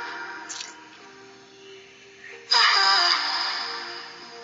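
R&B song playing: a soft, held passage, then a louder sung phrase comes in about two and a half seconds in.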